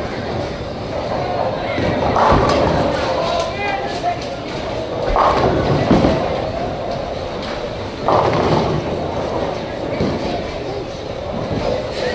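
Bowling alley din: bowling balls rumbling down the lanes and pins crashing, with sharp crashes about two, five and eight seconds in, over a background murmur of voices.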